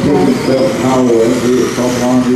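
Speech: a man's voice announcing the race over a public-address system.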